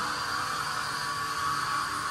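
Steady machinery noise in a factory hall: an even, continuous hiss and hum with no distinct knocks or clicks.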